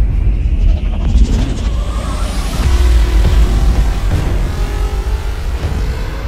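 Closing theme sting of a TV talk show: music with a deep, heavy bass throughout and a rising whoosh about two seconds in.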